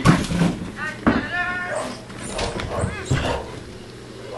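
A border collie whining and yelping in short pitched calls, with a few thumps of movement in between.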